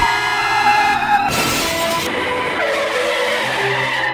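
Car tyre-screech sound effect: a squeal that slides slightly down in pitch, then a loud burst of hiss about a second and a half in.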